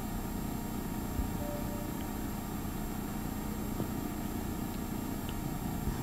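Room tone: a steady low hum with a faint knock about a second in.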